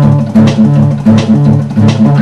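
Acoustic guitar being strummed, chords struck in a steady rhythm of about three strums a second.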